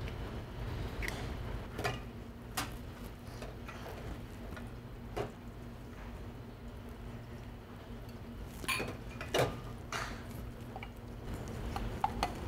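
Light, scattered clicks and taps of eggshell, a glass and a steel cocktail shaker tin being handled on a bar counter as an egg is separated and raspberries are tipped into the tin, over a steady low hum.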